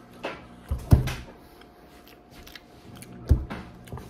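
A person eating at a table: a few short clicks and thumps, the strongest about a second in and another near the end, with quiet room tone between.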